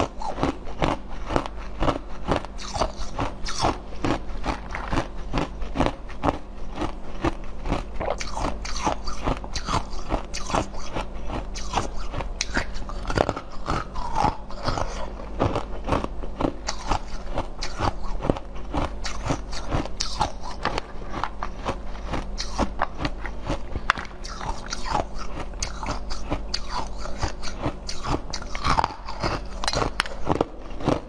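Close-miked crunching and chewing of frozen jelly pieces: a steady, rapid run of crisp bites and crackles with no pause.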